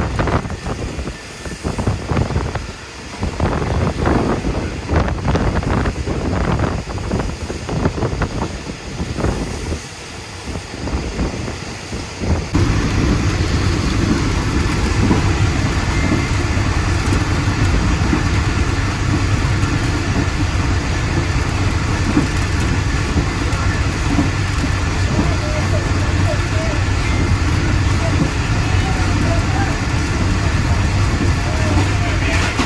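Passenger train running, heard from an open carriage window: uneven knocking and rattling of wheels over the track at first, then, after an abrupt change about twelve seconds in, a steady loud rumble and wind rush of the train at speed.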